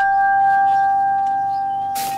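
A bell dated 1774 ringing out after a single strike: a steady, loud hum with a couple of higher overtones, slowly fading.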